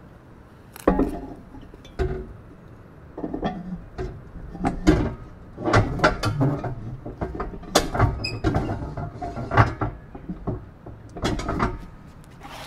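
An electronics chassis with its battery being lowered and slid into a white plastic cylindrical equipment housing and seated under its cap: a series of irregular knocks, clunks and scrapes of handled parts.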